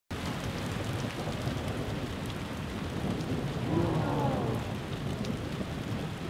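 Steady rain falling, with a low rumble of thunder from a lightning storm underneath.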